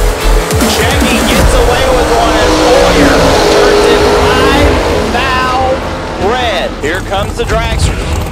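Two door-class drag cars launching side by side and running down the track at full throttle: a loud, dense engine roar that builds after about a second and fades around five seconds in. Excited voices follow near the end.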